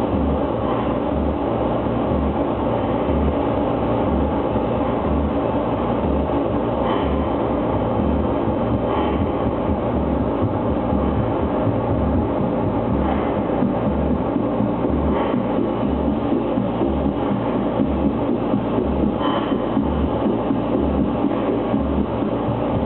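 Live harsh noise music from electronics: a dense, loud wall of distorted noise with a low throb pulsing about three times every two seconds, and a few sharper crackles breaking through.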